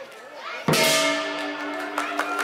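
A single loud strike of the lion-dance percussion ensemble's gong and cymbals about two-thirds of a second in, ringing on with a sustained metallic tone after a short lull in the drumming.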